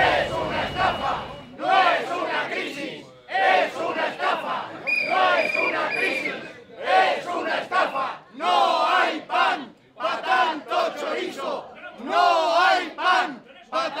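A crowd of protesters shouting slogans together, phrase after phrase with short breaks between them.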